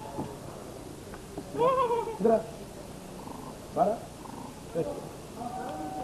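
Macaque monkeys giving short, high-pitched calls that bend in pitch, about four in all, the loudest about two seconds in.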